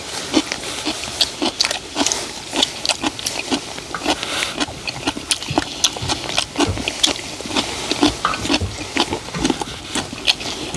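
Several people chewing and slurping mouthfuls of egg fried rice loudly, with lip smacks and short clicks of chopsticks and wooden spoons scraping and tapping on a wide pan.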